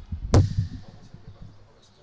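Handling noise on audio gear: a sharp knock about a third of a second in, followed by softer low bumps and rustling that die away.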